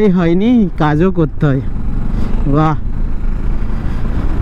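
Steady wind and road rumble of a motorcycle underway, with a man's wordless voice over it for the first second and a half and again briefly near three seconds.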